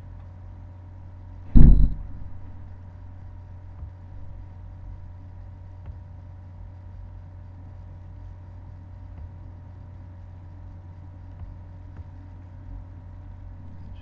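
Steady low hum of the recording setup's background noise, with a faint steady whine above it, broken once by a brief loud thump about a second and a half in.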